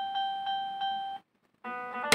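Electronic beeping of a Tom y Jerry fruit slot machine (maquinita) as its lights chase around the board: one steady beep tone pulsing about six times a second. It cuts off suddenly a little past the middle, and after a short gap a new chord-like electronic tone starts near the end.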